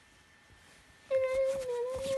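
A child humming a long, steady "mmm" note that starts about a second in, with a few light clicks alongside.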